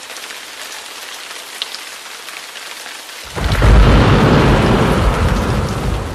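Rain and thunder: a steady hiss of rain, then a loud low rumble of thunder breaking in about three seconds in.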